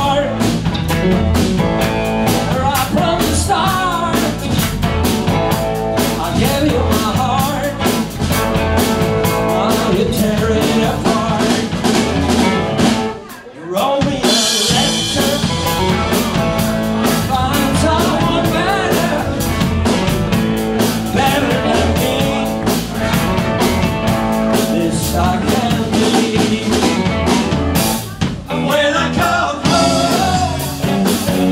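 Live blues-rock band playing: electric guitar, bass guitar and drum kit, with a man singing. The band stops briefly about halfway through, then comes back in loudly.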